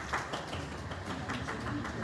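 Scattered light, sharp taps and clicks coming irregularly, several a second, over a low steady room hum.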